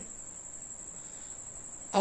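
A steady, high-pitched trill held at one pitch, over faint room noise.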